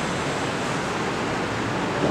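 Steady, even hiss of background room noise.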